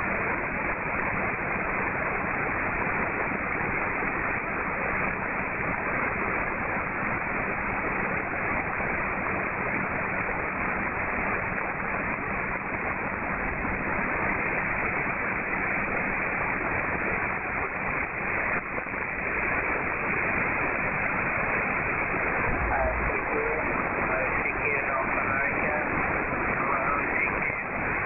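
Shortwave receiver's audio on 20-metre single sideband: a steady hiss of band noise with no readable station. Near the end faint whistling tones glide past as the receiver is retuned.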